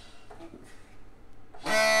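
A short lull with a few faint small sounds, then about a second and a half in the tune starts abruptly: Leicestershire smallpipes sounding their steady drone in D under the A chanter, with fiddle and mouth organs playing together.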